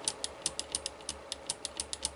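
Rapid light clicks, about six or seven a second, from a small push-button switch pressed over and over to step a homemade 8-bit computer's program counter by hand.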